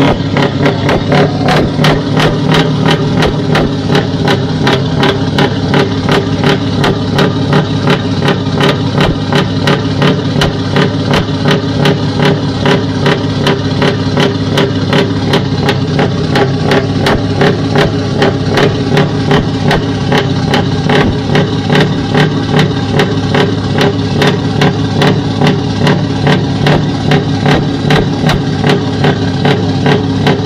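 A large truck's diesel engine idling loudly and steadily, with an even throbbing pulse of about three beats a second.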